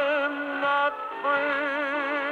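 A 78 rpm shellac record of a slow crooner ballad with orchestra, playing on an acoustic wind-up Grafonola gramophone. A held, wavering note ends about a second in, and a new phrase begins a moment later.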